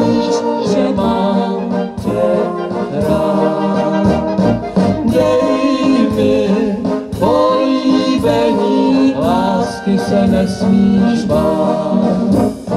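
Czech brass band (dechová hudba) playing a song, with a woman and a man singing over it through the PA.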